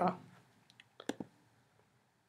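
A few faint, short clicks about a second in, after the end of a spoken word, then near silence.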